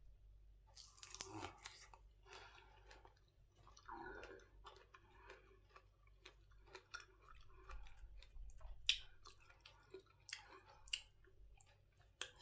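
Faint close chewing of a bite of firm, unripe green mango, with many small irregular mouth clicks and wet smacks as it is chewed.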